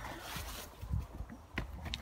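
Footsteps on a grass and earth path over a low rumble on the microphone, with two sharp clicks near the end.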